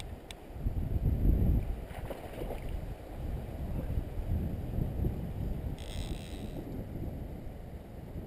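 Wind buffeting the microphone over a flowing river, a steady low rumble, with a short higher hiss about six seconds in.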